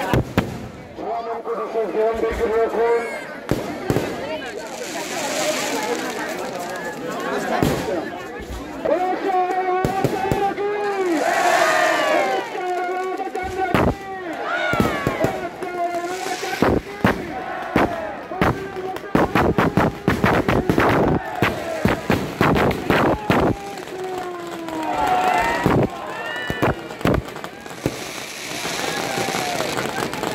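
Firecrackers packed inside a burning Ravana effigy going off in sharp bangs and crackling, fastest and densest around the middle, while a crowd shouts and calls.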